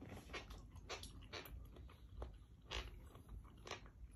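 A person chewing soft melon flesh close to the microphone, the chewing sounds coming in short irregular bursts, about two a second.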